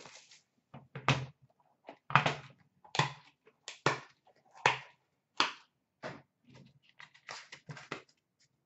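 A series of sharp knocks and clunks, about one a second, from a card box and its packaging being handled, set down and opened on a counter. The knocks are louder in the first half and lighter near the end.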